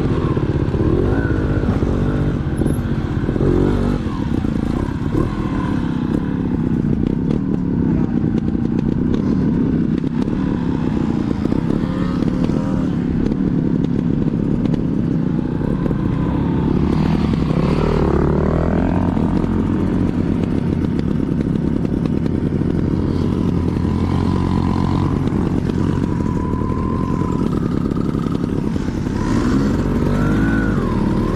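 Dirt bike engine running at low speed as it is ridden across rough ground, the throttle opening and closing so the pitch rises and falls, with stronger revs a little past halfway and again near the end.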